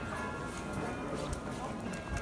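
Footsteps clicking on stone paving, several sharp steps in the second half, with passers-by talking.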